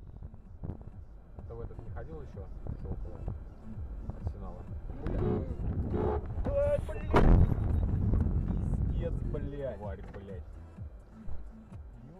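Low road rumble of a moving vehicle, heard through a dashcam, with a sudden loud thump about seven seconds in.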